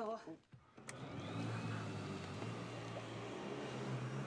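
A water-filtration vacuum cleaner is switched on with a click about a second in. Its motor spins up with a faint rising whine, then runs with a steady hum.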